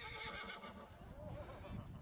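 Faint rugby-field background of distant voices from players or spectators, with a faint wavering call about halfway through and no loud events.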